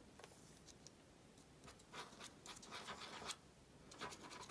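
Faint scratching and small ticks from a fine-tip squeeze bottle of Art Glitter Glue being squeezed and worked over paper, with a few scratchy strokes in the second half; the bottle is running low.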